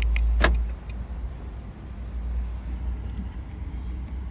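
A single sharp click about half a second in, over a steady low rumble inside a car's cabin that eases after the first second.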